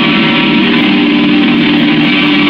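Electric guitar, a Stratocaster-style solid-body, strummed loudly and without a break.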